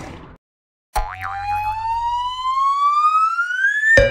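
A whistle-like tone starts abruptly after a short silence and rises steadily in pitch for about three seconds. It is an edited-in rising-whistle sound effect.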